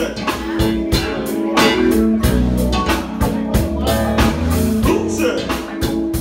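Live funk band playing an instrumental passage: electric bass, electric guitar, keyboards and drum kit over a steady beat.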